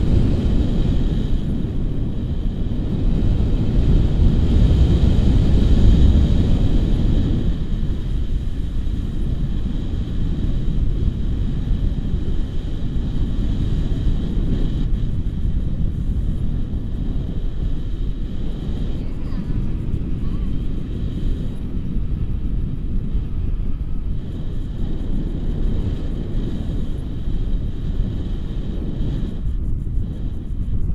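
Wind rushing over the microphone of a camera carried on a tandem paraglider in flight: a steady low rumble, strongest about five or six seconds in.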